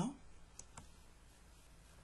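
Two faint, short clicks from working a computer, about half a second apart, over quiet room noise.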